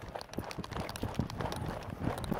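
A rapid, uneven run of low knocks and thuds, several a second.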